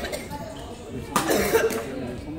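A person coughs about a second in, over faint background voices.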